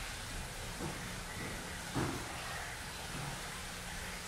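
Steady hiss of background room noise, picked up by the camera's built-in microphone, with a faint brief sound about two seconds in.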